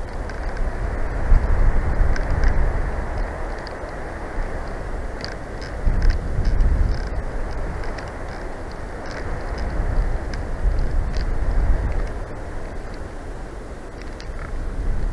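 Wind buffeting the nest-cam microphone: a low, noisy rush that swells and eases in gusts several times.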